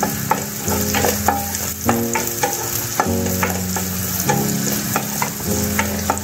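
Chopped onions and green chillies sizzling in hot oil in a nonstick wok while a wooden spatula stirs them. Short taps and scrapes of the spatula against the pan come every fraction of a second over the steady hiss of the frying.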